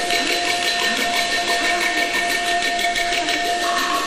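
Teochew opera accompaniment holding one long steady note, which fades out shortly before the end, with fainter high sustained tones above it.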